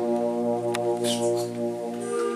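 Brass band holding one long sustained chord, with a low bass note underneath that fades out near the end.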